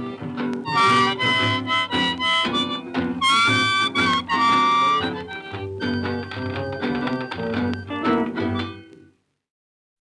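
Blues harmonica playing the closing instrumental bars of a 1930s blues record, with bent, held notes over a rhythm accompaniment. The music fades and stops about nine seconds in, ending the recording.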